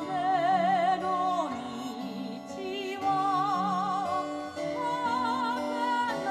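A recorded song played through a homemade three-way Fostex speaker system: a singing voice holds long notes with a wide, even vibrato over sustained accompaniment.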